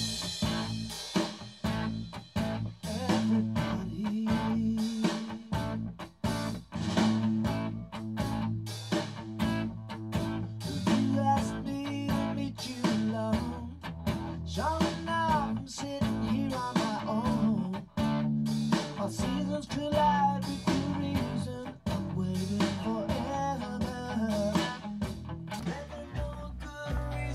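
Electric guitar strummed in a steady rhythm over sustained bass notes, rock-band music with some bending higher notes about halfway through.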